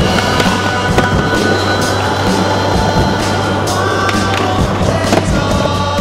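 Skateboard wheels rolling over rough asphalt, with a few sharp clacks of the board popping and landing, under a music track.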